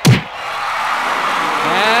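A single heavy punch sound effect, then a crowd roar that swells steadily louder.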